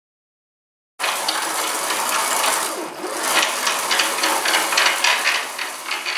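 A second of silence, then a home-built CNC plasma cutting table's gantry and torch carriage running along its rail: loud, uneven mechanical clatter with rapid clicks and rattles.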